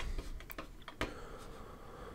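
A few scattered computer keyboard keystrokes, short faint clicks spread over about the first second.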